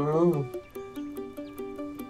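A drowsy 'mmm' groan from someone waking in bed, rising slightly in pitch and ending about half a second in. It sits over light background music with a steady ticking beat and short repeating notes.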